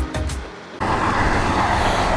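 Background music ends within the first half second. From just under a second in, steady vehicle noise follows, an even rush with a faint low hum.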